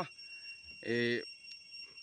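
A man's voice: one short spoken syllable about a second in, with pauses either side. A faint steady high-pitched whine sounds behind it.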